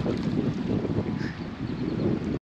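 Wind buffeting the microphone in uneven gusts, a low rushing noise with no engine tone in it.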